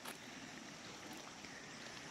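Faint, steady rush of a muddy river running high and fast after a flood, with a light click at the very start.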